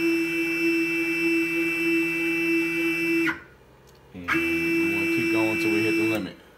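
Stepper motors of a Genmitsu PROVerXL 4030 CNC router jogging an axis: a steady high-pitched whine that cuts off about three seconds in and starts again a second later.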